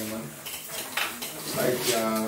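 Clinking and clattering of glass bottles and cups on a bar counter, a few sharp clinks about a second apart.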